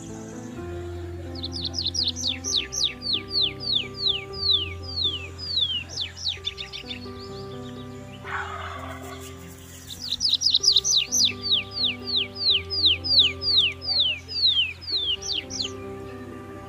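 A bird calling in two long runs of quick, falling whistled notes, about three a second, with a gap around the middle, over background music of sustained tones. A brief rustling noise comes about eight seconds in.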